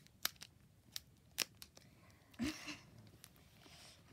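Foil booster-pack wrapper being torn open and handled: a few sharp crinkling clicks, then a short rustle about two and a half seconds in.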